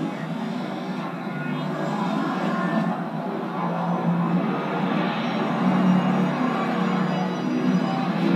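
Dramatic film score from an action movie's soundtrack, playing steadily, heard from a screen's speakers in a room, with little bass.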